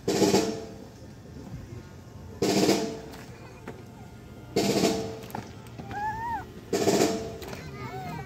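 Snare drum playing short rolls at a steady pace, one about every two seconds, marking time for marching drill.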